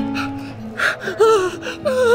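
Background music with acoustic guitar, and just under a second in a sharp gasp, followed by a wavering, strained vocal cry from a person.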